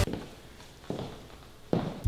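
Two footsteps on a hard tile floor, about a second apart, in a quiet room just after music stops.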